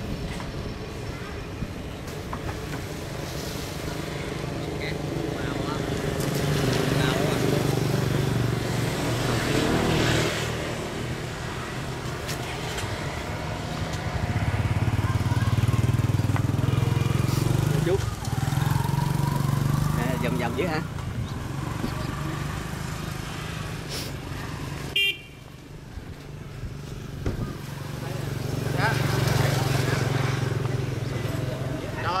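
Road traffic passing close by: engine sound swells and fades several times as vehicles go past, with a short horn toot.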